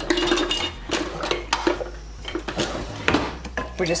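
Kitchen utensils clinking and knocking in several separate strikes. Near the end a wooden spoon starts stirring melted butter and seasonings in a glass measuring cup.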